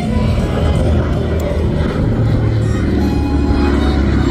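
Music, with the low drone of a Douglas C-47 Dakota's twin radial piston engines growing louder as the aircraft flies past.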